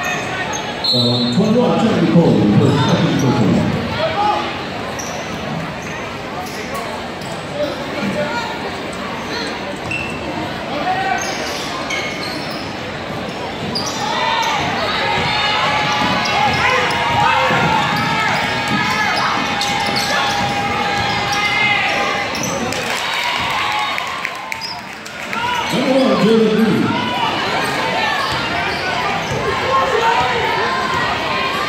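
Basketball game in a gym: the ball dribbling on the hardwood floor, shoes squeaking, and spectators' voices. Loud nearby voices come in about two seconds in and again near the end.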